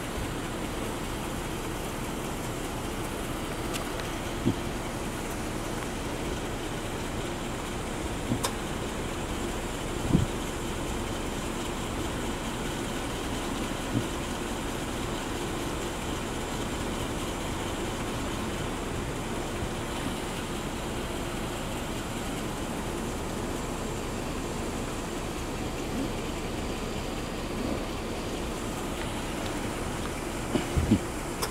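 Steady hum of a car engine idling. A few brief sharp knocks stand out over it.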